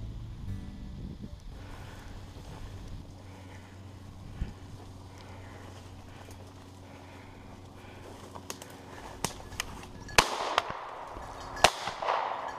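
Two loud, sharp bangs about a second and a half apart near the end, after a few lighter clicks: an over-and-under shotgun's barrels striking a tree trunk as it swings on a flushing grouse, and a shot fired at the bird that misses. The first bang is followed by a short ringing echo.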